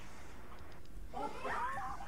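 A high, wavering cry with gliding pitch starts about a second in and carries on.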